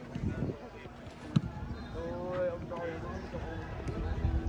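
A football struck once with a sharp thud about a second and a half in, and a fainter knock near the end, as players kick a ball about in a warm-up.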